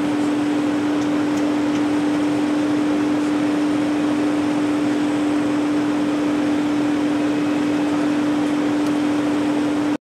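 A parked vehicle's steady mechanical hum: one constant droning tone over an even hiss, unchanged throughout.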